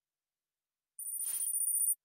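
Brief high-pitched electronic ringing tone from the Kahoot! quiz software, starting about a second in after silence and cutting off suddenly after about a second.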